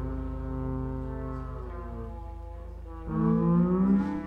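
Live small-group jazz: horns hold long, slowly fading notes over double bass, and a louder new horn note comes in about three seconds in.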